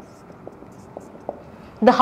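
Marker pen writing on a whiteboard: a few faint, short strokes in a quiet room. A woman starts speaking near the end.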